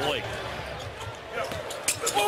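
A basketball bouncing on a hardwood arena court during play, over a steady hum of crowd noise, with a sharper knock near the end.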